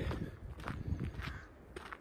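Footsteps on a rough path, about two a second, with wind buffeting the phone's microphone in a low rumble.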